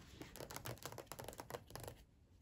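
Pages of a textbook being handled and turned: a quick run of soft paper rustles and small taps, close to the microphone.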